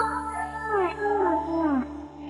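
Female pop vocals with the instrumental track stripped away: a run of short sliding notes, each falling in pitch, several overlapping, over a faint low hum.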